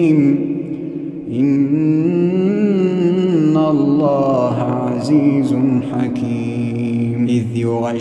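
A man reciting the Quran in melodic tajweed style, drawing out long, wavering, ornamented notes, with a brief pause for breath about a second in.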